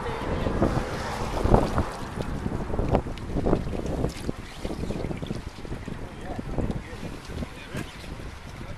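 Water splashing and sloshing as a wire-mesh basket is moved and lifted through shallow water, in irregular bursts, with wind buffeting the microphone.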